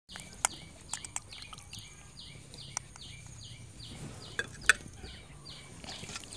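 A bird repeating a short high chirp about two and a half times a second, with a few sharp clicks of a metal utensil against a steel bowl.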